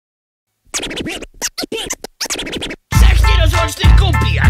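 Near silence at first, then record scratching in short, choppy strokes. About three seconds in, a hip hop beat with heavy bass kicks in.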